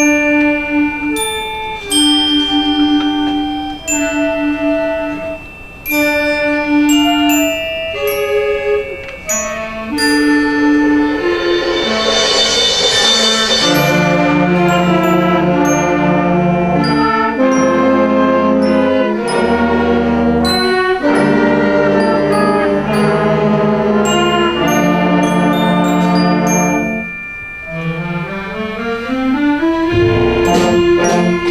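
Sixth-grade school concert band playing. Bell-like struck mallet notes carry the tune alone at first, a swell builds about halfway, then the full band comes in with low brass and winds.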